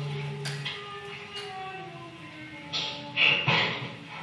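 Recorded chanting played back in the hall: a voice holding long notes, one of them slowly falling in pitch, with a few short hissing sounds near the end.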